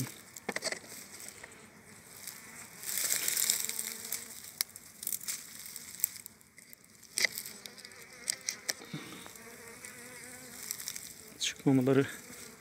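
Honeybees buzzing at the hive entrance as it is being narrowed by hand, with scattered clicks and scrapes of wooden blocks against the hive's plastic entrance fitting and a brief rustle about three seconds in.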